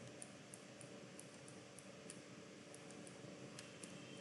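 Near silence: room tone with faint light ticks, about three a second, from a computer mouse's scroll wheel while the chart is zoomed.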